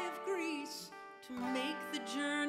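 Woman singing a slow folk ballad with vibrato on held notes, over the steady ringing chords of a twelve-string guitar.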